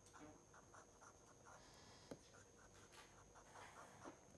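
Faint scratching of a stylus writing by hand on a tablet, a run of short quick strokes.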